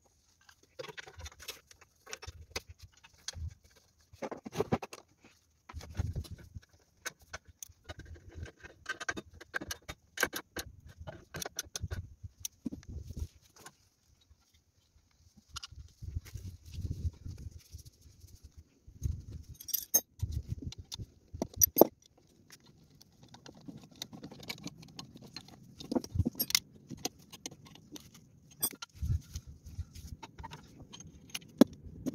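Plastic bubble-wrap packaging rustling and crinkling as it is pulled off generator parts, with irregular clicks and knocks of the parts being handled.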